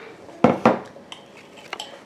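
Kitchen utensils clinking against dishes: two sharp clinks about half a second in, then a few lighter clicks.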